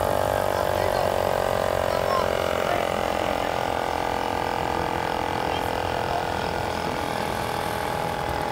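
Air compressor of a minibike's air-ride suspension running with a steady mechanical whir, pumping up the air bags.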